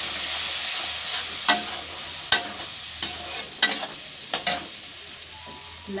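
Onion-and-spice masala frying in a metal kadhai while a metal ladle stirs it, sizzling steadily with several sharp scrapes and knocks of the ladle against the pan. The sizzle fades gradually as the masala is fried down with a little water.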